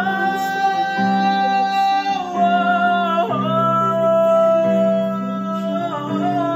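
A man singing, holding two long notes with a slight waver, the second a little lower and starting about halfway through, over a steady instrumental accompaniment.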